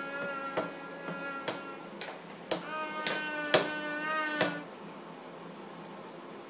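A toddler's voice in two long, held, sing-song cries, the second from about two and a half seconds in to past four seconds, while a small hand slaps wetly into a plastic bowl of yoghurt about seven times.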